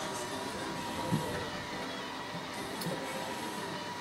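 Steady outdoor background noise with a faint, even hum.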